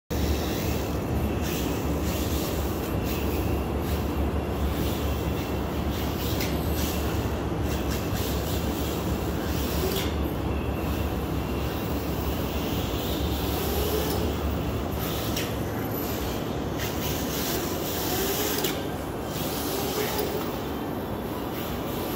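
Electric RC drift cars sliding around an indoor track: a steady rumble and hiss of hard tyres on the track surface. Faint motor whines rise and fall in the second half.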